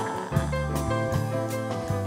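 Live band playing a bossa nova groove with no singing: electric bass, keyboards, electric guitar and drum kit.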